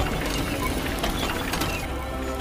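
Mechanical sound effect of a robotic armour helmet assembling over the face: a rapid run of clicks and ratcheting, with a steady low rumble underneath.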